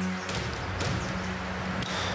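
Low, sustained dramatic underscore music with held notes that shift to a new chord about a third of a second in, with a few faint rustles.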